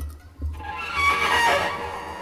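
A rooster-like crowing call sounds amid an improvising ensemble. It starts about half a second in, rises and then falls in pitch, and dies away near the end.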